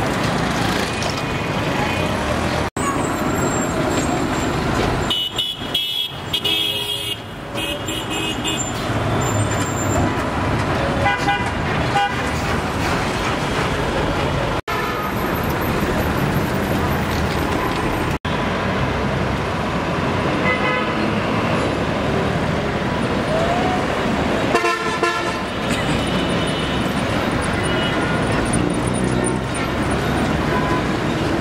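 Busy road traffic with cars, trucks and motorbikes running, and short vehicle horn toots sounding several times.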